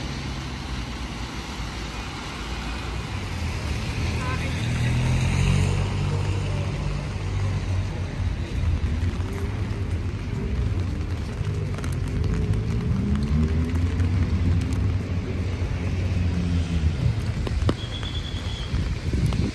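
Road traffic passing on a wet city street: a steady low rumble of cars and buses with tyre noise, and voices of passers-by over it.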